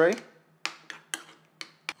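A metal spoon stirring yogurt in a small ceramic bowl, clicking against the bowl about five times.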